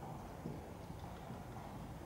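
Faint, dull hoofbeats of a horse moving over the soft footing of an indoor riding arena.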